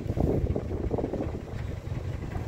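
Wind buffeting the microphone: an irregular low rumble.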